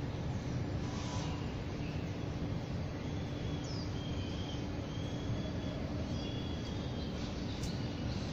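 Steady low outdoor city background rumble with a constant low hum. A few faint, short, high chirps come through in the middle and toward the end.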